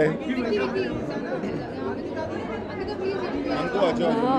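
Several people talking over one another at once: indistinct crowd chatter, with no single voice standing out.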